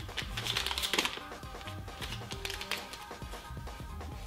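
Background music, with a brief crisp rustle of a paper banknote being handled in the first second.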